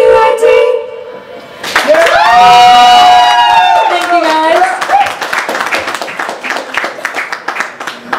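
A live band's final chord stops about a second in. Female voices then sing a long, pitch-bending closing note without accompaniment for about three seconds. Audience clapping follows.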